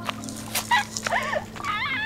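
Short whining, whimper-like cries over a steady low drone. One arching cry comes about a second in, and a wavering one comes near the end.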